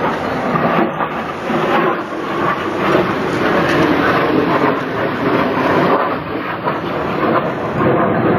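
Jet aircraft flying overhead, its engine noise a loud, steady rush.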